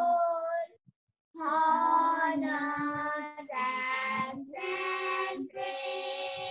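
Two children singing a Christian devotional song together over a Zoom video call. A held note ends, the sound drops out completely for about half a second, then they sing on in short phrases about a second long.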